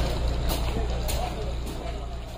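A large vehicle's engine running with a steady low hum, and a short hiss recurring about every half second.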